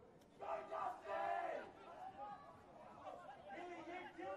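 Men shouting during a rugby match: two loud shouted calls about half a second and one second in, the second dropping in pitch at its end, then fainter scattered voices.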